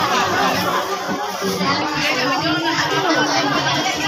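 Several women talking over one another in lively, overlapping chatter, with no single voice standing out.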